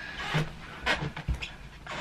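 A few short, breathy exhalations, about three in two seconds.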